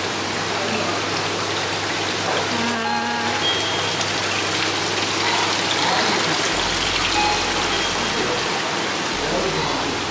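Steady rushing and splashing of running water from the aquarium tanks' filters and water inflows.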